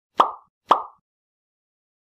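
Two short pop sound effects, about half a second apart, of the kind added in editing as on-screen icons appear.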